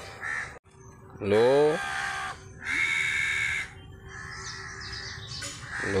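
Bird calls: one loud, rough call lasting about a second in the middle, followed by fainter high chirping.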